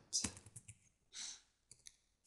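Faint, scattered keystrokes on a computer keyboard as code is typed: a short run of clicks near the start, a softer one about a second in, and a couple more near the end.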